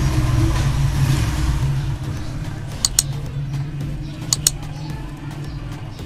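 Reverse osmosis unit's booster pump running with a steady low hum, just switched on to build pressure in the freshly changed filter housings. The hum eases a little after about two seconds, and two quick pairs of sharp clicks come about halfway through.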